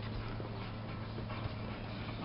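A steady low hum under faint, even background noise, with a few faint soft knocks.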